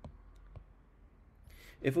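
Two light clicks about half a second apart, a stylus tapping on a tablet screen while handwriting notes. A man's voice begins near the end.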